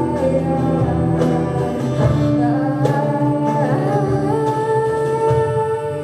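Live band performance: a woman sings long held notes over electric guitars, with a steady low bass line and a few sharp cajon hits.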